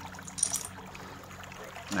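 A low, steady background hum with one brief, faint scrape about half a second in, from a hand moving things on the tiled floor.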